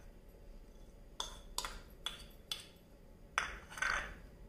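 A metal spoon clinking against a small bowl and a stainless-steel mixer jar as chopped ginger and chillies are spooned onto soaked chana dal: about six light, separate clinks, a few with a short ring.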